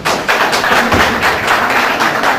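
Audience applauding: many people clapping at once, a dense, irregular patter of claps that starts suddenly.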